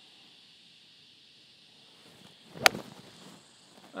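A single sharp crack of a golf iron striking the ball about two and a half seconds in, after a stretch of quiet outdoor background. It is a centred strike out of the middle of the clubface.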